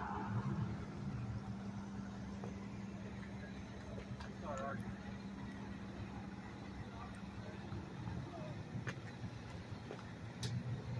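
A vehicle engine idling with a steady low hum that stops about eight seconds in, over a low traffic rumble and faint distant voices.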